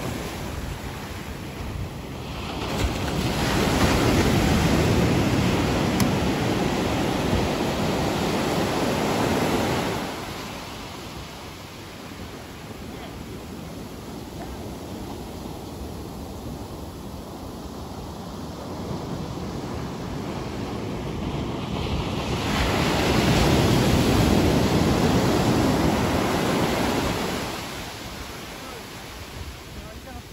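Ocean surf breaking and washing in around the shallows, with two long, loud surges of whitewater, one starting about three seconds in and one about twenty-two seconds in, and a lower steady wash between them.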